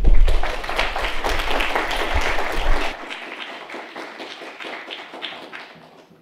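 Audience applauding, loudest at first and dying away over the last few seconds, with low thumps mixed in during the first half.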